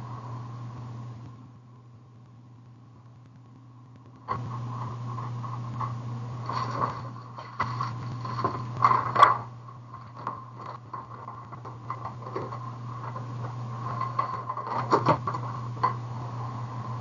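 Small clicks, taps and rustles of craft supplies being handled and moved, over a steady low hum. The handling sounds start about four seconds in, after a quieter stretch, and are loudest near the middle and again near the end.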